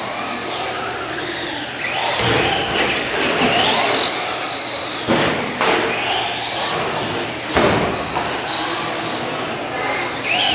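Electric Traxxas Slash short-course RC trucks racing on carpet, their motor and gear whine rising and falling in pitch as they speed up and slow down. A few sharp thumps cut through it.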